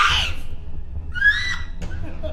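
A person's wailing cry that wavers in pitch, ending just after the start, then a second, higher cry rising in pitch about a second in, over a steady low hum.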